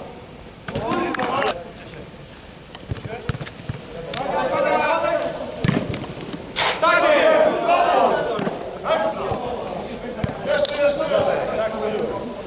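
Footballers shouting to each other across an indoor pitch, with several sharp thuds of the ball being kicked; the loudest kick comes about six and a half seconds in.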